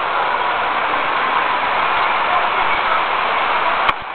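Steady din of busy city-street traffic, with a single sharp click just before the end.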